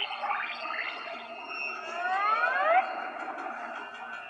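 Animated-film soundtrack of music and sound effects, played through computer speakers and sounding thin, with no bass. About two seconds in, a rising whine sweeps up and cuts off suddenly about a second later.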